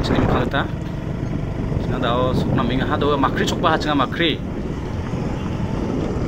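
Steady rumble of wind on the microphone and road noise from a moving vehicle. A voice speaks over it briefly at the start and again around the middle.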